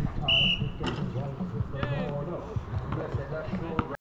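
Players' voices and shouts on an outdoor basketball court during a shot. A short, high steady tone sounds near the start, and a sharp knock comes just under a second in, which fits the ball striking the hoop.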